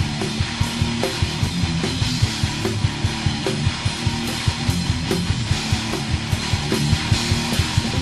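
Thrash/death metal band playing at full tilt: distorted electric guitars, bass and drums, with a fast, steady kick-drum beat driving under dense guitar noise.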